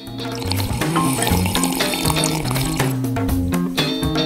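Background music with a stepping bass line, over a watery sound of a drink being sucked up through a straw.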